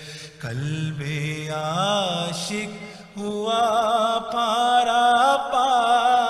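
A man's solo voice singing a devotional naat in long held notes that waver and turn in ornaments, with brief breaths near the start and about three seconds in.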